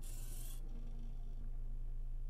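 Steady low electrical hum, with a short rubbing rustle in the first half-second and a faint, brief tone just after.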